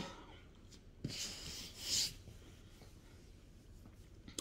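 A hand brushing and rubbing against the fabric of a blouse. It makes a faint click about a second in, then a soft rustle lasting about a second.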